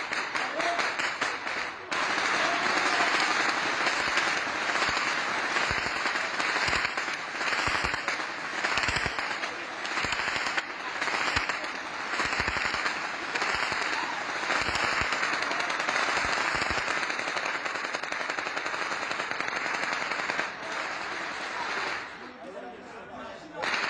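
Sustained automatic gunfire, many shots fired in rapid strings from several weapons at once. It grows denser about two seconds in and keeps up without a break.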